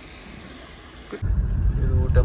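Low rumble of a car interior while driving, engine and road noise, starting abruptly about a second in after faint quiet background.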